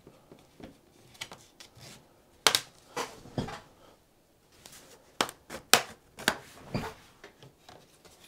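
Plastic retaining clips of a Lenovo IdeaPad 330's case snapping loose one after another as a plastic guitar pick is worked along the seam. Faint scraping and handling first, then about seven sharp clicks from a couple of seconds in.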